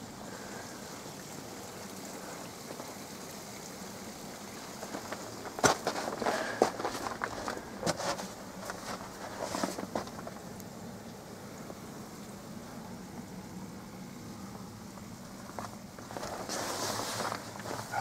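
Footsteps crunching on ice and snow, a run of crisp crackly steps in the middle, over the steady rush of water flowing at the partly thawed river dam.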